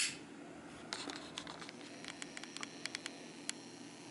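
Faint, irregular light ticks and rubbing of fingers handling a small metal pipe lighter, about a dozen ticks scattered over a couple of seconds, after a brief noisy burst at the very start.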